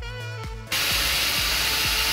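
Background music for about the first second, cut off abruptly, then diced vegetables and raw rice sizzling in hot olive oil in a pan: a steady, loud frying hiss as the rice is sautéed with the sofrito.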